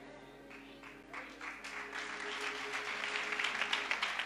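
Soft sustained keyboard chords held under the service, with applause from the congregation starting about a second in and building.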